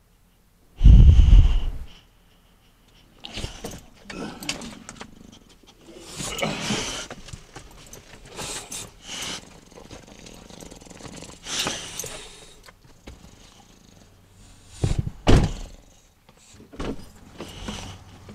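Dogs clambering about inside a pickup truck cab: a heavy thump about a second in, then irregular knocks and rustling as they move over the seats, with a light jingle of collar tags and two more thumps near the end.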